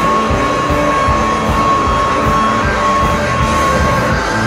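Live rock band playing loud, led by electric guitar over a steady beat, with one high note held steady through most of it.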